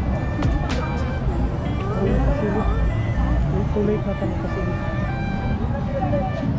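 Busy market-street ambience: a crowd of people talking, traffic running, and music playing throughout.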